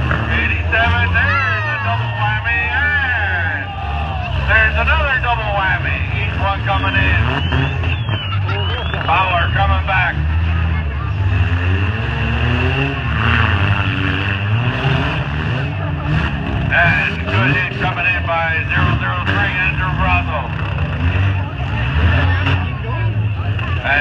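Demolition derby car engines running and revving on the track, the pitch rising and falling as the drivers work the throttles, with a public-address announcer talking over them.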